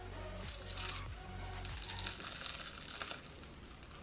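Dried black peel-off face mask being pulled away from the skin: a soft, irregular crackling and tearing as it lifts off.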